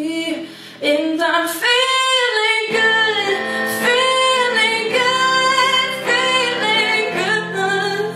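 A woman singing a held, sliding melody over instrumental backing, with a short break just under a second in before the voice comes back.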